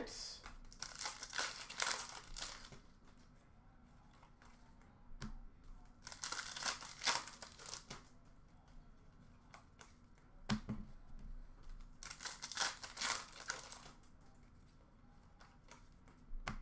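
Foil hockey card pack wrappers crinkling and tearing open in three short bursts a few seconds apart, with a few light clicks from cards being handled in between.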